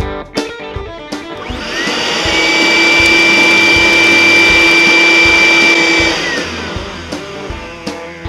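Vacuum cleaner motor spinning up about a second and a half in, running steadily with a high whine for about four seconds, then winding down and fading out near the end. Guitar-and-drums rock music plays underneath throughout.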